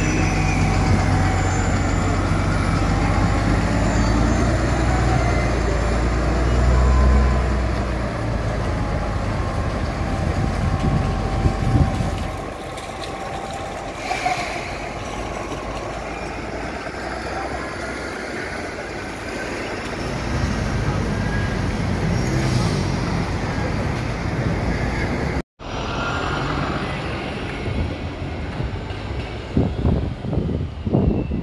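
Orion VII diesel-electric hybrid city bus pulling away from a stop and driving off, its engine and drive running loud for about the first twelve seconds, then fading into street traffic noise. Near the end another bus is heard approaching along a street.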